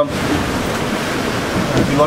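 Steady rushing noise of wind and water around a sailing catamaran under way, heard from inside the cabin; a voice cuts in near the end.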